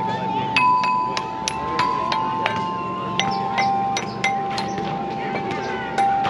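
Metal tubes of an outdoor playground mallet instrument struck with a mallet: about a dozen notes at an uneven pace, each ringing on and overlapping the next.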